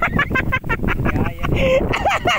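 Several people's voices, high and excited, shouting and calling out over a low rumble of wind on the microphone.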